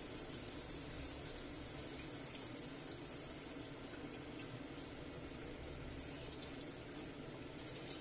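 Fish stock poured from a carton in a thin stream into a pot of potatoes: a faint, steady pouring of liquid throughout.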